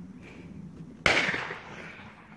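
A single shotgun shot about a second in, sharp and loud and fading over about half a second, fired at a thrown clay target.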